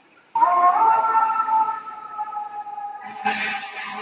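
Fire engine siren starting as the engine pulls away on a run: several held tones that come in abruptly about a third of a second in and slowly fade. A louder burst of noise follows about three seconds in.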